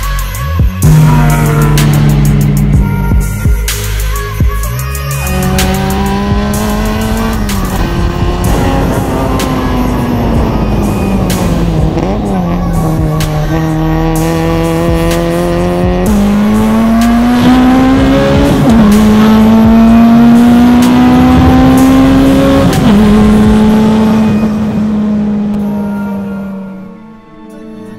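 Honda Civic Mugen RR's tuned K20 four-cylinder engine, fitted with a titanium exhaust, running hard under load. Its pitch sinks as the car slows, then climbs through the gears, dropping suddenly at each of three upshifts in the second half, over background music.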